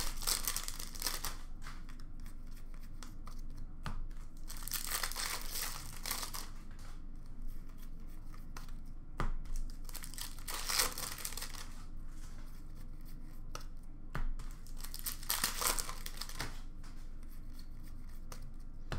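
Upper Deck hockey card pack wrappers being torn open and crinkled by hand, in several loud bursts of tearing and rustling, with small clicks of cards being handled between them.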